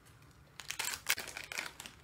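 Thin clear plastic snack packet crinkling as it is handled and a rice cracker is taken out: a run of rustles starting about half a second in and lasting over a second.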